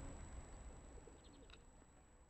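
Near silence fading away, with a few faint, short bird calls about a second and a half in.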